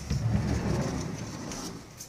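Muffled rumbling and rubbing of a handheld camera's microphone being handled and covered as it is carried, loudest in the first second and then fading.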